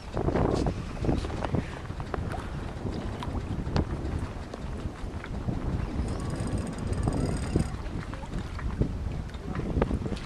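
Wind buffeting the microphone over water washing and splashing past the hull of a sailboat under way.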